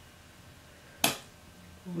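One short, sharp click from a plastic bottle of leave-in conditioner being handled as product is dispensed, about a second in.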